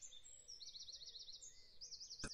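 Near silence with faint, high-pitched bird chirping: a quick trill about halfway through and another near the end.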